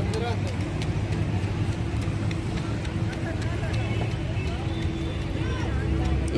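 Outdoor crowd ambience: faint, scattered voices over a steady low rumble with a faint held hum, and a few small clicks.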